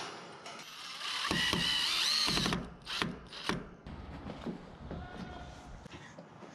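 A steel spring snap clip and the wire of a cattle panel worked by hand: a loud metal scrape with a ringing squeal lasting about a second and a half, then several sharp metallic clicks as the clip is snapped and the panel shifts.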